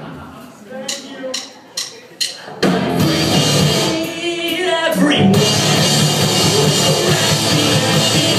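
Four sharp clicks about 0.4 s apart, a count-in, then a rock band with electric guitars and drum kit starts playing loud about two and a half seconds in. Heard from the back of a room through a phone microphone.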